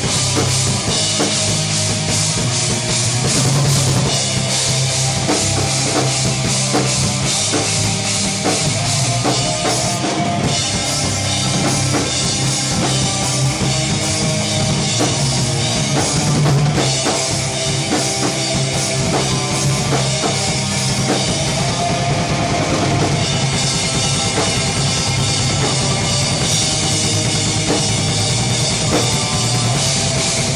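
A live metal rock band playing loud, with electric guitars, bass and a drum kit driving a steady beat.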